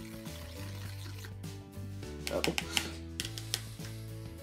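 Background music with steady held notes, over soft wet scraping and a few clicks of a paintbrush handle stirring paint on a plastic plate.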